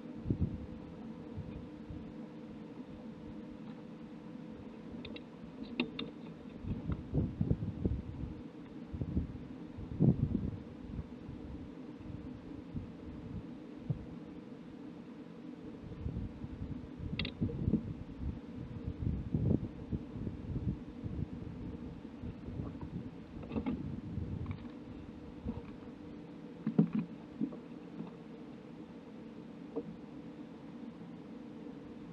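Irregular low thumps and a few sharp clicks of handling in a bass boat while a largemouth bass is weighed, over a steady low hum.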